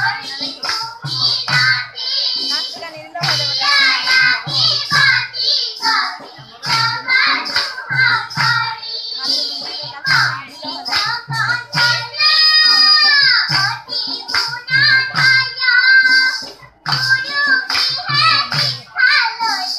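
A group of children singing together to a hand-played barrel drum keeping a steady beat, with hand clapping. About twelve seconds in, the voices hold one long note that falls away at its end.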